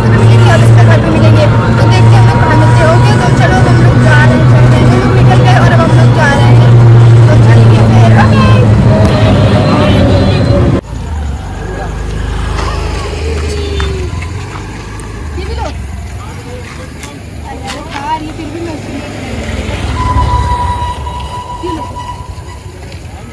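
Steady low hum of a moving open rickshaw heard from the passenger seat, with voices over it. It cuts off abruptly about eleven seconds in, leaving quieter outdoor sound with scattered faint noises.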